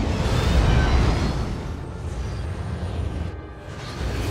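Film sound mix of the Quinjet's jet engines rushing past in a loud low rumble that peaks about a second in and then fades, with orchestral score underneath.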